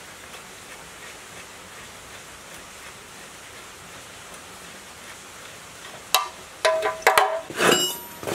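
A steady low hiss, then from about six seconds in a handful of sharp metallic clinks and scrapes with brief ringing, as metal parts are handled against the open aluminium crankcase of a dismantled generator engine.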